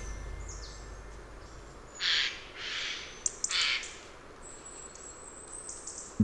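Wild birds calling: three harsh, rasping calls of about half a second each begin about two seconds in, with a few short chirps among them, then a thin, high whistle later on.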